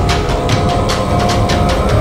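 Background music: a held note over a fast, steady percussive beat.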